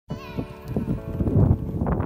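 Horse cantering on a sand track: irregular hoofbeat thumps, with a pitched call near the start.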